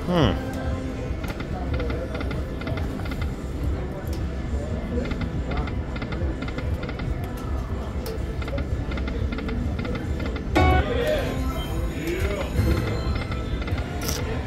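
Panda Magic video slot machine spinning its reels, its game music and reel sounds running over casino background chatter, with a falling tone at the start and a burst of chimes about ten seconds in.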